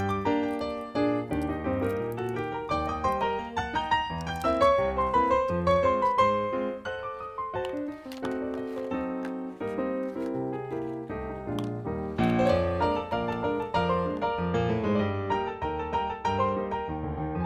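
Background piano music, a continuous run of melody notes over lower chords.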